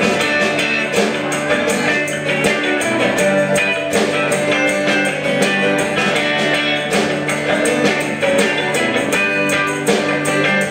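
Live band playing an instrumental passage on electric and acoustic guitars, with percussion keeping a steady beat.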